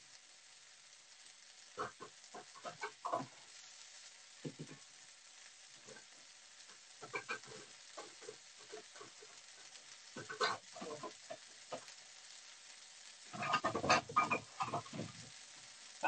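Chicken stir-fry sizzling faintly in a frying pan, with scattered clatters and knocks of cookware being handled, the busiest run near the end.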